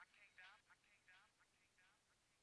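Near silence: a faint, thin voice repeating a short phrase several times, fading away toward the end.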